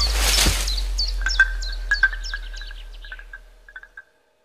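Closing logo sting: a deep bass tone with a whoosh at the start, then a string of short bird-like chirps and ticks that thin out and fade away near the end.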